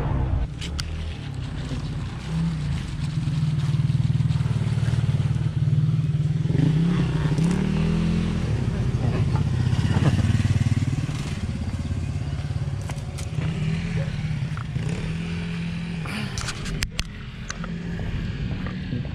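A small motorcycle engine running close by, its pitch rising and falling several times as it is throttled. A few sharp clicks near the end.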